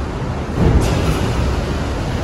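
Loud, steady rumbling background noise in a concrete parking garage, heaviest in the low end.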